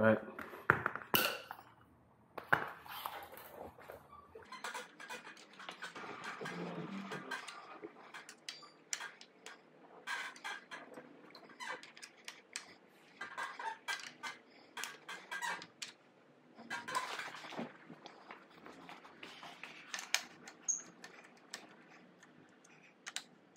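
Hand tools and small metal parts clinking and clicking, with scattered knocks and handling noise, during work on an e-bike motor's mounting and wiring.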